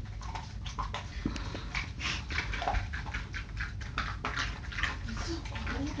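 A dachshund chewing a piece of ice, a string of irregular crunches.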